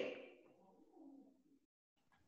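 The end of a woman's raised call trailing away, then near silence with a faint, low pitched sound about a second in.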